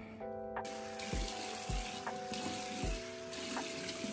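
Tap water running into a bathroom sink as a face is rinsed of cleanser. The water starts about half a second in and runs steadily.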